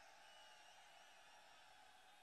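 Near silence: only a faint hiss.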